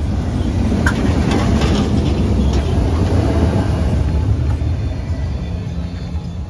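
A PCC streetcar rolling past close by on its rails and pulling away: a low rumble with a few sharp clicks from the wheels about a second or two in, easing off near the end as the car moves away.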